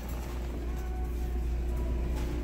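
Steady low hum of supermarket background noise, with a faint steady tone above it.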